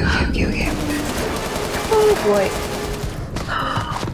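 Rapid, sustained automatic gunfire from an action film's soundtrack, a dense volley of shots with the loudest burst about two seconds in.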